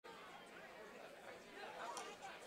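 Faint audience chatter, several voices talking at once.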